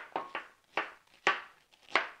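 Knife chopping pineapple on a wooden cutting board: about six sharp knocks at an uneven pace as the blade goes through the fruit and hits the board.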